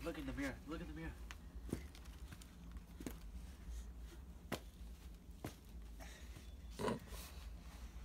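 A toddler's wordless vocal sounds, first in the opening second and again near the end. Between them are a few scattered soft knocks.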